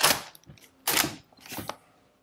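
Early Gustloff-made MG42 being cocked by hand to lock the bolt to the rear: short metallic sliding clacks of the charging handle and bolt. The loudest comes at the start and another about a second in, with a softer one shortly after.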